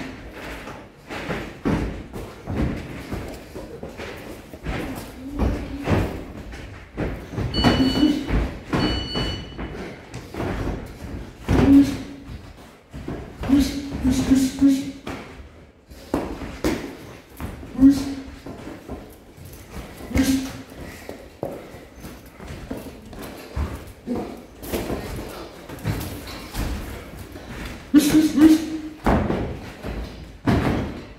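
Boxing gloves landing on a sparring partner's gloves and body in repeated irregular thuds and slaps, in a large echoing gym, with short vocal grunts or breaths from the boxers between the punches.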